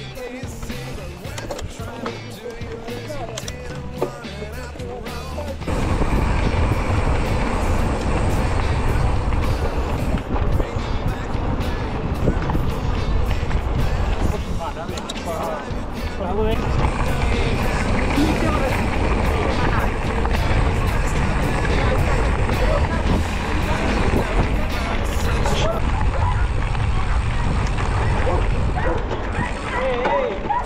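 Mountain bike rolling over dirt and gravel: tyre rumble and rattle of the bike under heavy wind rush on the camera's microphone. It is quieter at first and jumps much louder about six seconds in, then stays loud.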